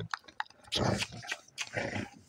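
German shepherd puppy growling in two rough stretches while tugging on a rope toy, after a few short clicks.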